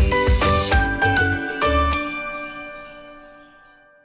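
Upbeat programme jingle music with a regular beat; about two seconds in the beat stops and the final chord rings out and fades away.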